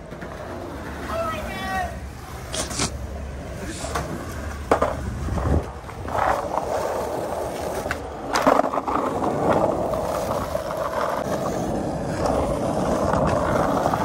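Skateboard wheels rolling on asphalt and concrete, with sharp clacks of the board hitting the ground, the loudest cluster about eight seconds in as the skater pops a trick and lands. A steady wheel rumble follows.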